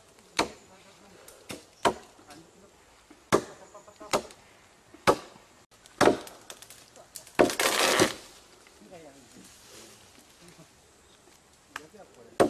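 Hand blade chopping into wood: six sharp, irregular blows about a second or so apart, then a longer crashing rush of noise at about seven and a half seconds as brush or branches give way.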